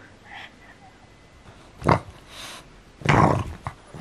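Black pug snorting close up: one short sharp snort about two seconds in, then a longer, louder snort near the end.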